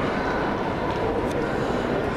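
Steady background din of a large, echoing exhibition hall: an even wash of noise with faint, distant voices in it.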